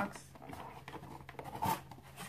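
Cardboard box being handled and opened, its sides and flaps scraping and rustling against the hands, with a short louder noise near the end.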